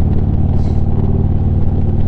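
Harley-Davidson Street Glide's V-twin engine running steadily at cruising speed, heard from the rider's seat.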